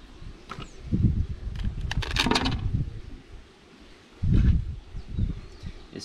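Wooden honey-super boxes of a stingless-bee hive being handled: scrapes and knocks of wood with dull thumps, the loudest a little after four seconds in.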